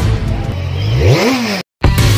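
Engine revving sound effect in an animated logo intro: the pitch climbs sharply about a second in and drops back, then cuts off abruptly. Music starts right at the end.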